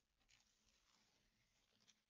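Very faint scratchy rasping of masking tape being peeled off the edges of watercolour paper, in short irregular pulls.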